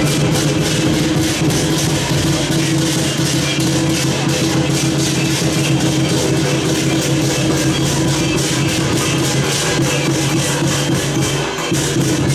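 Lion dance percussion: drum and cymbals beating a fast, even rhythm, with a steady low drone underneath.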